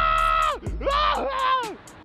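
A man's voice yelling two long drawn-out shouts, the second wavering in pitch, over background music with a steady beat.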